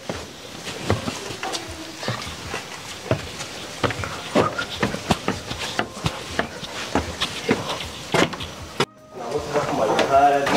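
Footsteps of a person walking, about two steps a second, over a noisy background with a few short animal calls. The sound cuts out briefly near the end.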